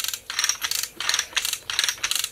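Lever chain hoist being ratcheted by hand: its pawl clatters in short bursts of rapid clicks, about three a second, as the handle is pumped back and forth.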